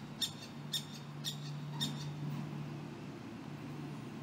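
A bird chirping: short, high chirps about twice a second through the first two seconds. A faint, steady low hum runs under it.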